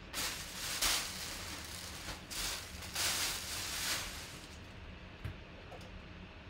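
Rustling and rubbing as a full-size football helmet is handled and turned over, coming in several swells of noise over the first four seconds, then dying down.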